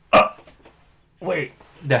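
A man's short, sharp bursts of laughter: one just after the start and another, longer one about a second and a half in.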